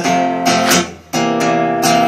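Acoustic guitar strummed, chords ringing between strokes, with the strings briefly cut off about a second in before the strumming picks up again.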